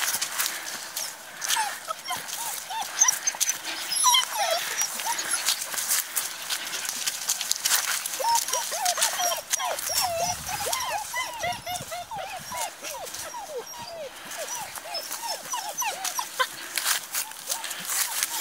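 Bohemian Shepherd (Chodský pes) puppies whimpering and whining in short high squeaks, a few at first, then coming thick and fast from about halfway through. Close-up rustling and clicking noise runs under them.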